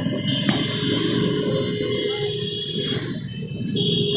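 Suzuki Gixxer 155's single-cylinder engine running at low speed in traffic as the rider shifts down from third to second gear, with road and wind noise around it.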